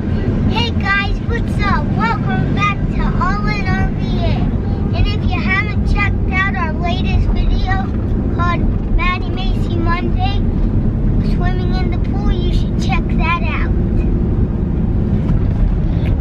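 Steady road and engine rumble inside a moving car's cabin, with a young girl's voice talking over it through most of the stretch.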